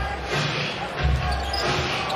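Basketball being dribbled on an arena's hardwood court, two low thuds about a second apart, over steady arena crowd noise.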